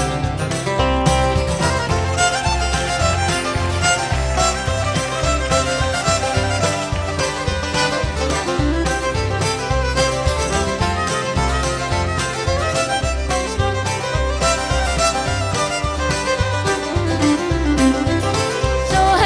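Live acoustic bluegrass-country band playing an instrumental passage, a fiddle leading over a steady bass beat.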